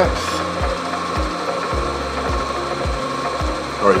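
Vertical milling machine with its spindle running and an end mill in the collet, giving a steady whine and a low thump repeating a little under twice a second.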